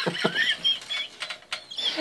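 A person's breathless, squealing laughter: a few short laughing gasps, then a run of high squeaks and wheezes with little voice behind them.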